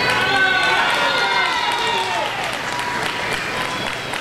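Indistinct voices in a large crowded venue, one long drawn-out voiced sound gliding over the first two seconds, then a faint steady tone over the background hum.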